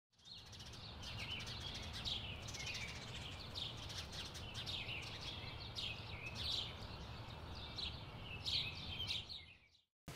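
Small songbirds chirping and twittering, a rapid run of short, mostly falling chirps, over a steady low rumble.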